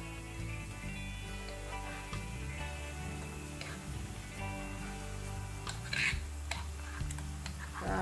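Background music over oil sizzling gently in a frying pan of garlic paste and whole spices, as spoonfuls of onion paste are added, with a few light spoon clicks.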